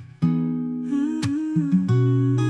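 Instrumental passage of an AI-generated acoustic song: acoustic guitar chords strummed about once a second, with a wavering melody line in the middle.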